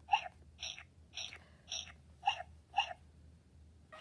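Recorded crying from a Baby Alive Grows Up doll's small electronic speaker: short repeated cries, about two a second, stopping about three seconds in.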